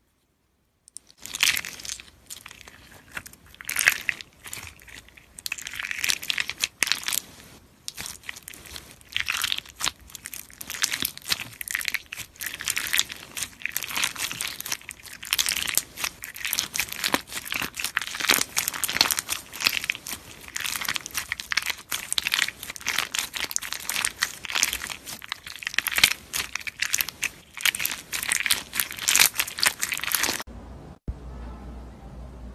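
Clear slime packed with chunky faceted plastic gems being squeezed and kneaded by hand: a dense run of crackles, clicks and pops that starts about a second in.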